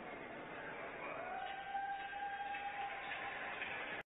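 Arena crowd applauding and cheering, with one long steady high-pitched call or whistle rising in about a second in and held for about two seconds.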